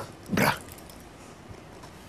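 A short, breathy vocal "uh" from a man about half a second in, then quiet studio room tone.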